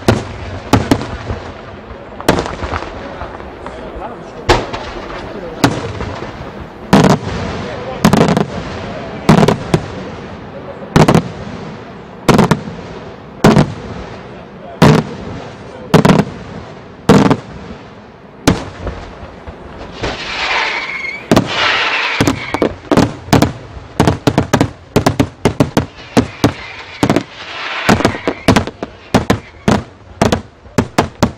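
Daytime aerial fireworks: sharp bangs of bursting shells about once a second. Past the middle, the bursts give way to a faster, denser run of bangs and crackles.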